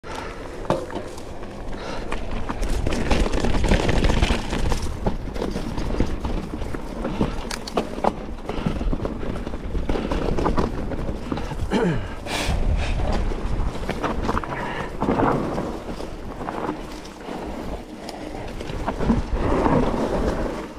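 Mountain bike being ridden along a rough, grassy dirt singletrack: tyre noise and dry grass brushing the bike, with frequent knocks and rattles from the bike over the bumps and wind on the microphone.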